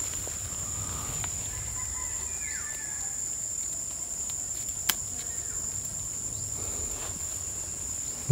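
Steady, high-pitched trilling of insects in the undergrowth, unbroken throughout, with a single sharp click about five seconds in.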